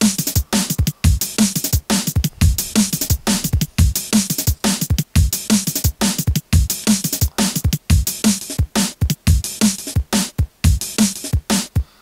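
Programmed drum-and-bass break at 175 BPM playing back from a Beatmaker 2 drum machine on an iPad. Kicks, bright snares and hi-hats loop in a fast, steady pattern.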